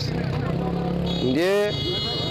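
A motor vehicle engine running steadily, with a man's voice breaking in briefly about a second and a half in. A high steady tone comes in a little after one second.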